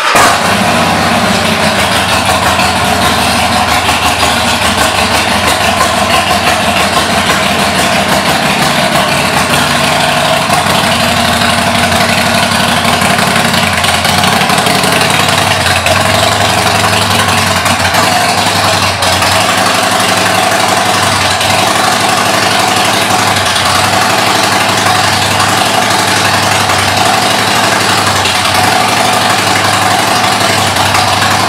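A 2016 Harley-Davidson Forty-Eight's air-cooled V-twin, fitted with Rinehart aftermarket exhaust pipes, catches right at the start and then idles steadily and loudly.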